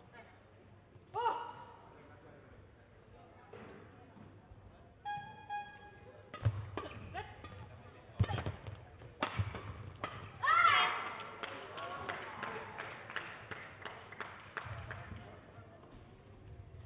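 Badminton doubles rally: a quick run of sharp racket strikes on the shuttlecock and footfalls on the court, mixed with players' short shouts. There is one shout about a second in, and louder shouting about ten seconds in, mid-rally.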